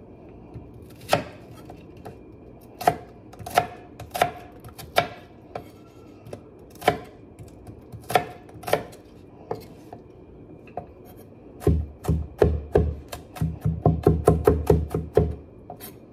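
Chef's knife cutting an onion on a wooden cutting board: single knife strokes knocking on the board about once a second, then a fast run of chopping, several strikes a second, for a few seconds near the end.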